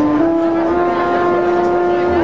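Trumpet playing a slow ballad melody in long held notes, stepping up in pitch about a quarter and three quarters of a second in, over quiet jazz band accompaniment.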